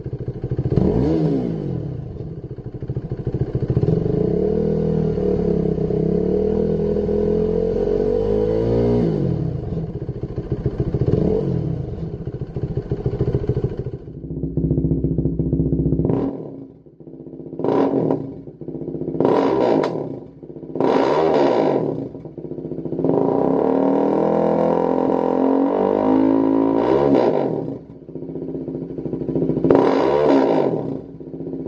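KTM 390 Duke's single-cylinder engine revved on a stand, first through the stock exhaust: several revs, including a long held one that climbs and falls back. About halfway through it is heard through a Lextek MP4 aftermarket silencer: a string of quick, sharp throttle blips, then a longer held rev, and another blip near the end.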